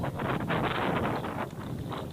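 Choppy sea water sloshing and splashing around people wading chest-deep, in many small irregular splashes, with wind buffeting the microphone.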